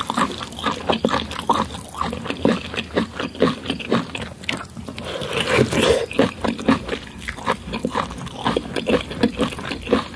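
Close-miked chewing of a mouthful of boiled corn on the cob, with wet lip smacks and mouth noises in a quick, irregular run of short clicks.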